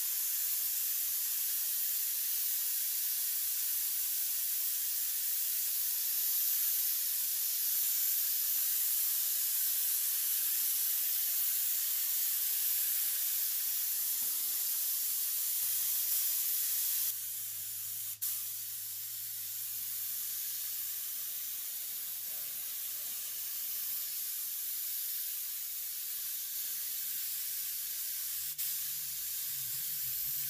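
Steady high hiss of compressed air from a gravity-feed spray gun, blown over fresh paint to evaporate the thinners. About 17 seconds in the hiss drops a little in level, with a short click just after.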